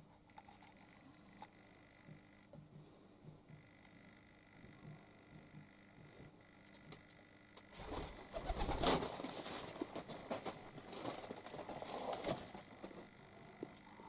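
Rock pigeons cooing softly in a small room. From about eight seconds in, louder rustling and clattering knocks join them.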